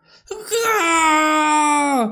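A man's voice giving one long, drawn-out pained wail, "kuaaaagh", acting out a dying scream. It starts high, drops in pitch about half a second in, then slides slowly lower.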